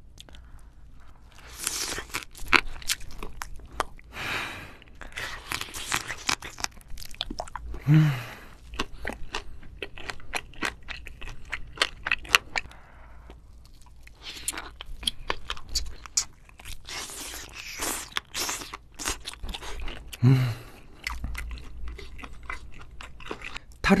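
Close-miked eating of raw seafood, starting with soy-marinated raw crab (ganjang gejang): wet sucking and chewing with many sharp crunches and smacks. A short hummed "mm" comes about eight seconds in and again near twenty seconds.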